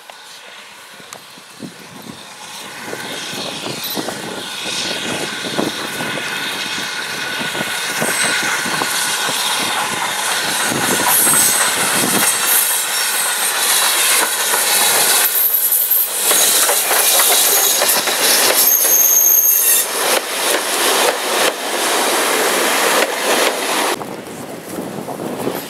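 Steam locomotive and its train approaching and running past, growing steadily louder over the first half, with a continuous clatter of wheels over the rail joints. Brief high-pitched wheel squeals come about halfway through and again later.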